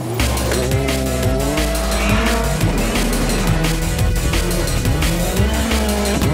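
Rally car engines revving up and down hard on a gravel stage, mixed under a loud electronic music track with a heavy bass beat.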